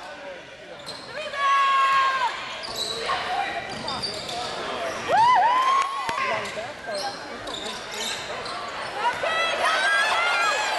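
Live basketball game in a reverberant gym: sneakers squeaking in short chirps on the hardwood floor, the ball bouncing, and players and spectators calling out.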